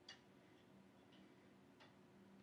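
Near silence: faint room tone with a low steady hum and two faint ticks, one just after the start and one near the end.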